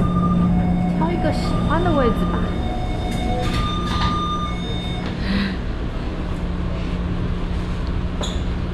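Steady running noise inside a moving metro train car: a low rumble with a continuous hum and a few thin steady whining tones.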